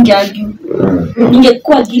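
A woman's voice talking.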